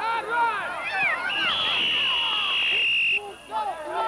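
Shouting from the sideline, then a referee's whistle blown in one steady high blast of about two seconds, starting about a second in and cutting off sharply.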